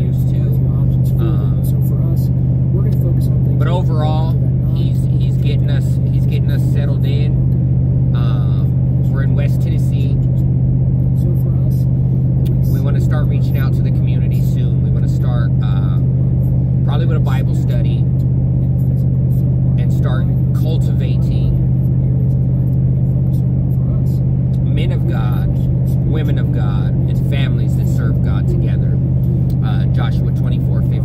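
Steady low drone of engine and road noise inside a vehicle's cabin while driving on a highway, with a man's voice heard quietly on and off over it.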